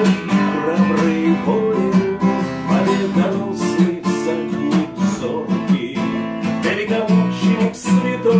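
Acoustic guitar strummed in a steady rhythm, accompanying a man's song.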